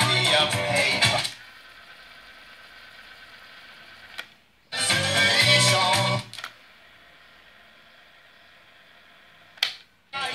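Bosch Los Angeles car cassette radio playing music that cuts out about a second in to a low steady hiss. After a sharp button click the music comes back for about a second and a half, then drops to hiss again, and a second click comes just before the end.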